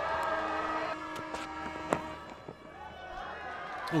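Cricket stadium background of crowd noise with steady droning tones. About two seconds in there is one sharp crack of a cricket bat striking the ball.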